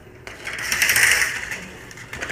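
Sliding glass patio door rolling along its track, a rattling rumble that builds and fades over about a second.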